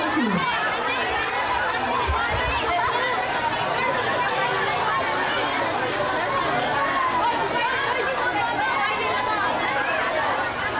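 A crowd of many voices talking at once: a steady, unbroken chatter with no single voice standing out.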